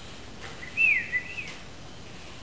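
A bird chirping: a quick cluster of short, high whistled notes about a second in, the loudest one sliding down in pitch.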